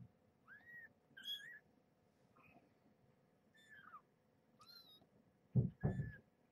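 Two-and-a-half-week-old kittens mewing: about five short, thin, high-pitched mews, each rising and falling in pitch, spread a second or so apart. Near the end come two louder low bumps.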